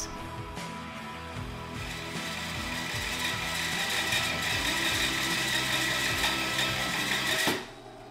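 Small benchtop bandsaw running and cutting a wedge slot into a round bird's eye maple mallet handle, mixed with background music. The cutting grows stronger about two seconds in, and everything cuts off suddenly near the end.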